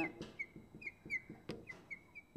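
Marker squeaking on a glass lightboard in a quick run of short, high strokes as a word is written out, with a sharp tick about one and a half seconds in.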